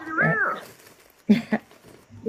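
A single short, high vocal call that rises and then falls in pitch, followed about a second later by a brief spoken "yeah".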